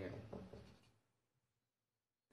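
Marker pen writing letters on a whiteboard, a run of short squeaky strokes in the first second that stops, followed by dead silence.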